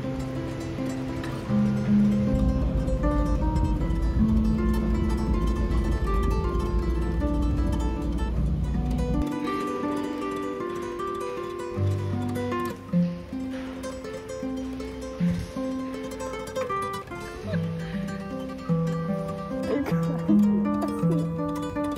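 Background music: a melody of plucked-string notes, with a low steady rumble under it for the first half that cuts off suddenly about nine seconds in.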